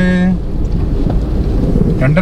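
Steady low rumble of road and wind noise from a moving car, heard from inside. A held voice note ends just after the start.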